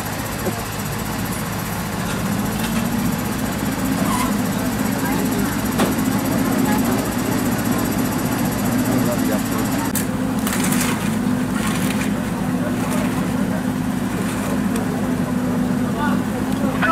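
A vehicle engine idling steadily, its pitch rising a little about two seconds in and then holding, under people talking indistinctly.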